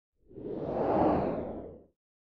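A single whoosh sound effect for an animated logo intro, swelling up and fading away in under two seconds.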